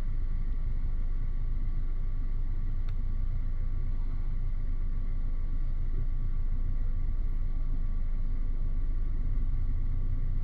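Steady low rumble and hum, with faint steady whining tones above it and one soft click about three seconds in.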